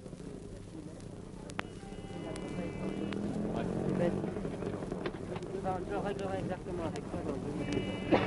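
Indistinct voices talking over the steady hum and hiss of an old radio recording, growing louder from about three seconds in, with a couple of sharp clicks near the start.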